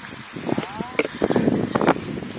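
Indistinct voices of people talking in the background, with a sharp click about halfway through.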